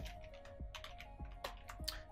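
Typing on a computer keyboard: a handful of quiet, separate keystrokes.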